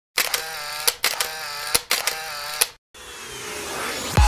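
Edited intro sound effect: three short mechanical click-and-whirr sounds, each a little under a second long, then a rising whoosh near the end.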